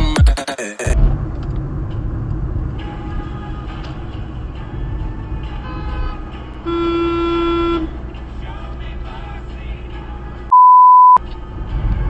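Steady road and engine noise inside a moving car, with one car horn honk about a second long from an Audi alongside, six to seven seconds in. Near the end a loud steady beep of about half a second cuts out all other sound, like a censor bleep.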